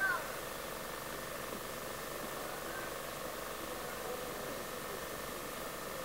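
Steady background hiss with a faint steady hum, and faint voices far off.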